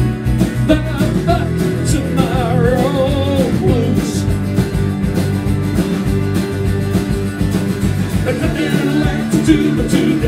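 Live indie rock band playing an instrumental passage between vocal lines: electric bass and drums under strummed electric and acoustic guitars, with a melodic line wavering in pitch between about one and four seconds in.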